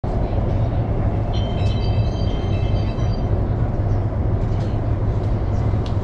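Steady low rumble of a high-speed bullet train running, heard inside the passenger cabin. A little over a second in, a cluster of high steady tones sounds for about two seconds over the rumble.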